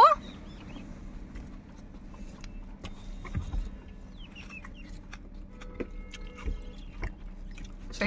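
Faint animal calls, a few short ones scattered through the quiet, with small clicks and rustles from a spoon and handling close by.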